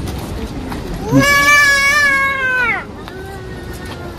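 A high voice calling out one long, drawn-out note for about a second and a half, dropping in pitch as it ends, followed by a fainter held call.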